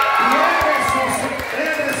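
A crowd cheering and shouting, with several voices raised at once.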